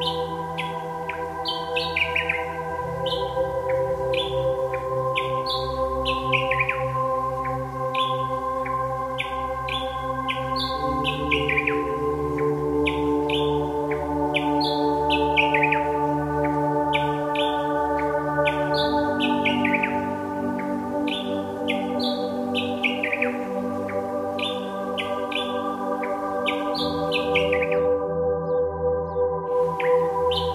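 Ambient drone music of layered held tones, with many short bird chirps sliding down in pitch repeated over it throughout.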